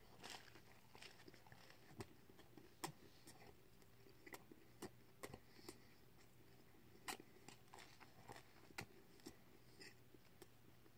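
A person chewing a mouthful of breakfast egg sandwich, faint, heard as scattered short mouth clicks at irregular intervals.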